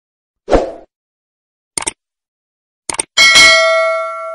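Subscribe-button sound effects: a short thump, then two quick double mouse clicks, then a bright bell ding with several ringing tones that fades slowly.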